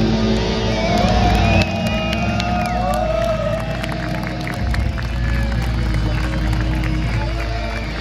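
Heavy-metal band's electric guitars and bass holding a low chord that rings out at the end of a song, with a large crowd cheering and shouting over it. The level drops a little about one and a half seconds in.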